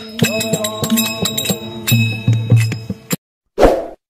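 Folk-style Hindu aarti music with rapid, sharp rattling percussion strokes over held tones. It cuts off suddenly about three seconds in and is followed by one short, loud, noisy sound effect.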